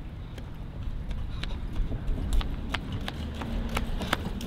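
Footsteps of someone walking on a concrete sidewalk in hard-soled shoes, a sharp click about two to three times a second, over a low outdoor rumble.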